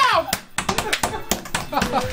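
A small group clapping unevenly, with voices among the claps; a sung note slides down and stops right at the start.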